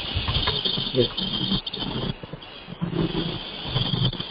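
A person's voice with a steady high-pitched hiss behind it that drops out briefly about two seconds in.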